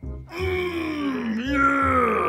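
A man's long, drawn-out wordless vocal exclamation, its pitch dipping and then rising again partway through, over background music with a steady beat.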